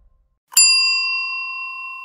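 A single bell 'ding' sound effect, struck once about half a second in and left ringing as it slowly fades. It goes with the notification-bell click in a subscribe-button animation.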